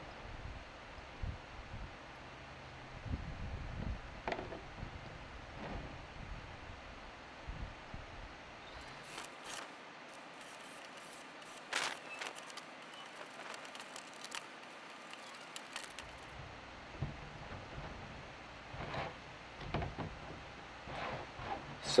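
A cordless drill boring holes for rubber grommets through a thin plastic tray, heard as short bursts of sharp crackling clicks in the middle stretch. Quieter knocks and scrapes of the tray being handled come before and after.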